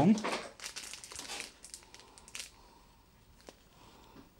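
Crinkling of the thin plastic sleeve around a bunch of fresh basil as it is handled, dense in the first two seconds, with one more sharp crinkle at about two and a half seconds.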